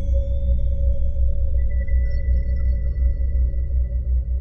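Ambient meditation drone music: a deep, pulsing hum under a steady mid-pitched tone, with soft high ringing tones fading out and another entering about one and a half seconds in.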